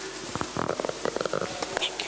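Microphone handling: low rumbles and knocks for about a second, mixed with muffled speech.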